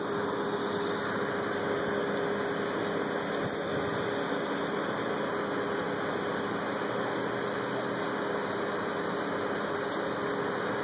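A steady mechanical drone with a constant hum, unchanging in level throughout.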